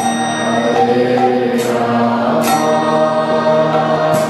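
Kirtan: a mantra chanted and sung to music over held, sustained notes. A few bright ringing crashes sound above it, one at the start and two more between a and a half and two and a half seconds in.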